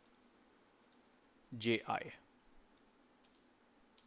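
Faint, scattered clicks of computer keys as a formula is typed, a few isolated keystrokes over a low room hiss.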